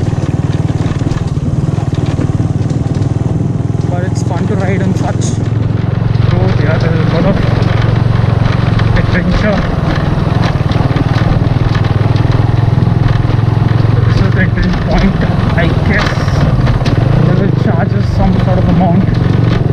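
Bajaj Pulsar 135's single-cylinder engine running steadily as the motorcycle rides over a dry dirt track, with road and wind noise on the rider's onboard microphone.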